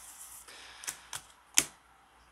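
Tarot cards being laid down one after another: a soft sliding rustle, then three sharp card snaps, the loudest about one and a half seconds in.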